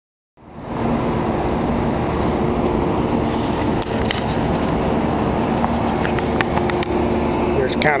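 Steady machinery hum with several held tones from a rooftop HVAC unit running, with a few light clicks over it.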